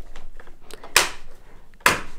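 Plastic mop plate of a Yeedi Vac Max robot vacuum being snapped onto the robot's underside by hand: two sharp clicks about a second apart, one about a second in and one near the end, with light handling rustle between.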